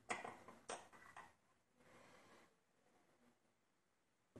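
Small, sharp clicks and taps of steel tweezers and a tiny lock pin being handled over a pin tray, bunched in the first second or so, with the loudest at the start. A soft rustle follows about two seconds in, then near quiet.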